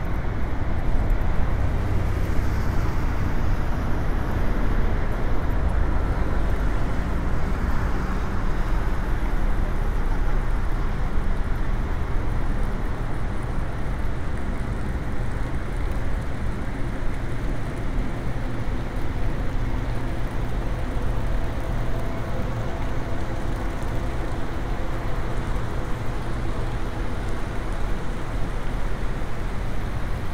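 Steady city background noise dominated by a low rumble of road traffic, with no sudden sounds. A few faint steady hums join it about two-thirds of the way in.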